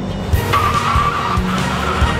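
Tyres screeching in a skid: a wavering high squeal that starts about half a second in, over background music with a beat.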